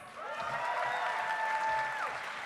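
Audience applauding a graduate, with one voice holding a long, steady note over the clapping.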